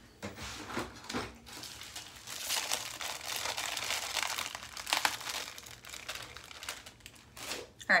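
Crinkling and rustling as supplies are rummaged through in search of makeup sponges, a crackly run of small noises from about two seconds in until near the end.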